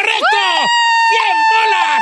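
A long, high, held shout of '¡Correcto!', its final vowel stretched out on one steady pitch for about two seconds, with other voices talking and laughing underneath.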